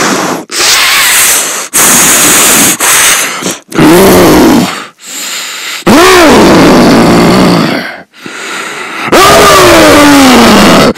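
Loud, distorted sound-effect bursts that cut in and out abruptly, a dozen or so short blasts of harsh noise. Three of them carry a long cry that rises and then falls in pitch.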